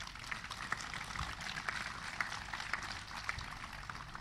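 An audience applauding: many hands clapping in a steady, even patter.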